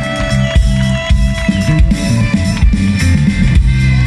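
Live band music: an electric bass plays a prominent low line over the drum kit, with a few sustained higher notes above it.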